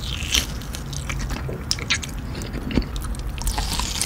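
Close-up bites into and chewing of a thick cased sausage topped with cheese sauce: a dense run of sharp, crisp clicks from the casing and wet mouth sounds.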